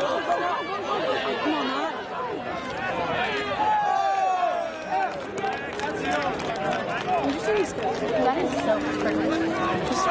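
Spectators chattering, several voices overlapping into an indistinct babble with no clear words.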